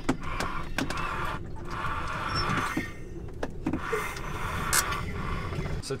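Yanmar 2GM two-cylinder marine diesel turned over slowly by hand crank, with clicks and knocks from the crank and engine and a repeated hiss of air escaping on the front cylinder. The engine turns too easily and is losing its compression, which the owner puts down to a leaking valve or head gasket.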